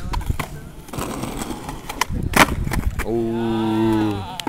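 Skateboard on concrete: wheels rolling and the deck clacking in a run of sharp knocks, the loudest a little past two seconds as a nollie trick is attempted. Near the end a person's long held call lasts about a second.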